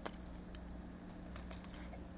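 Small plastic clicks and taps from a scout class Transformers figure (Hunt for the Decepticons Breacher) being posed by hand. There is one sharp click right at the start and a few lighter ones about one and a half seconds in.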